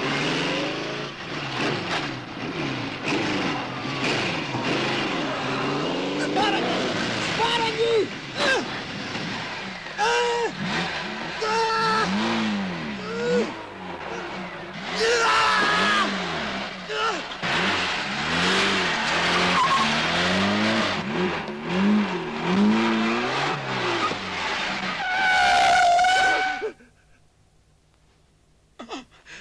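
Motorcycle engines revving up and down over and over, with tyre skidding; a long high squeal comes near the end, then the noise cuts off suddenly.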